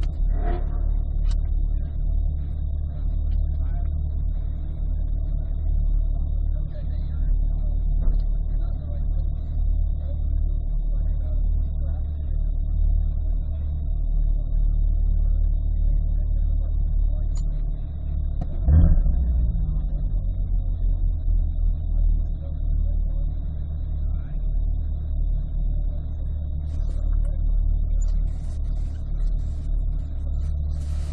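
2020 Chevrolet Corvette C8's 6.2-litre V8 idling steadily in Park, heard from inside the cabin as a low, even rumble. Once, about two-thirds of the way through, the engine note briefly rises and falls back.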